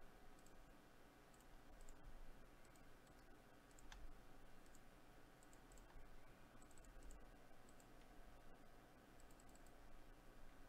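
Near silence: faint room tone with a few scattered, faint computer mouse clicks.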